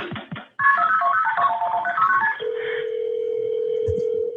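A telephone call being placed, heard on a call recording: a quick run of touch-tone keypad beeps, then about two and a half seconds in a steady ringing tone starts on the line.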